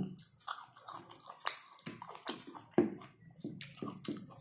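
Close-up wet chewing and lip smacks of a person eating a mouthful of food, in irregular short smacks and clicks, one louder smack near the end.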